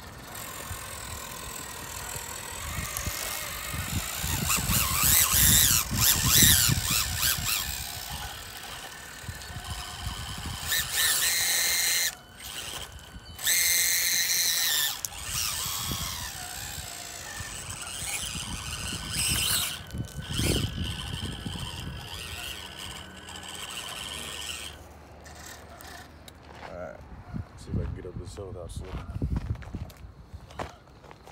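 Electric motors and gear trains of 1/24-scale SCX24 rock crawlers whining as they climb a slippery dirt slope. The whine comes in spurts that rise and fall with the throttle, with a few loud steady stretches that cut off suddenly.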